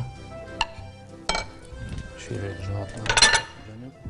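A spoon scraping and clinking against a ceramic bowl as mashed chickpeas are scooped out into a glass bowl. There are a few sharp clicks, then a louder clatter about three seconds in.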